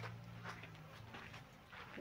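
Faint footsteps on a soil path, with a low steady hum underneath.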